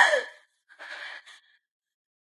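A young woman's breathy, wordless voice: a loud breath falling in pitch at the very start, then a softer breath about a second in.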